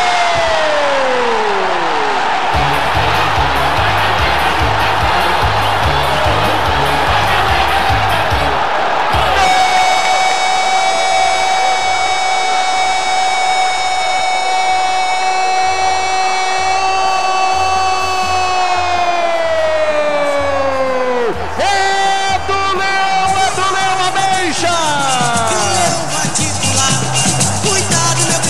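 Brazilian radio narrator's goal cry, a single held 'gooool' kept on one pitch for about ten seconds, then falling away. Under it are the crowd's roar and a low steady beat.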